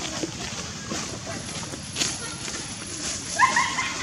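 A macaque gives a short, high-pitched pulsed squeal with a rising start about three and a half seconds in, the loudest sound here, over a faint background of rustling and clicks.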